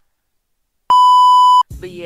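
A single loud, steady electronic bleep tone, about three-quarters of a second long, coming in after a moment of silence and cutting off sharply: a censor-style bleep edited into the soundtrack.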